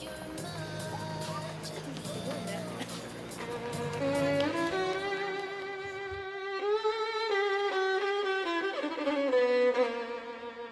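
Arena background noise, then solo violin music begins about four seconds in with slow, held notes: the opening of a figure-skating program's music.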